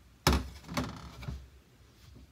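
A white ceramic plate set down on a stainless steel kitchen counter: one sharp clack about a quarter second in, then a few lighter knocks and rattles over the next second.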